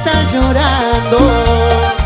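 Live Latin tropical band music in an instrumental passage: a pulsing bass line, hand percussion and a wavering melodic lead.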